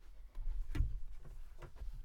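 Faint scattered knocks and rustles of a person moving into place in a small vocal booth, over a low steady hum.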